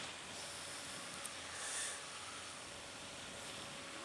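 Faint, muffled riding noise from a Suzuki Bandit 650S motorcycle: a low steady hum of engine and road, with a short hiss a little under two seconds in.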